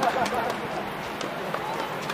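Distant voices and chatter around outdoor tennis courts, with a few faint tennis-ball hits as the serve is put in play.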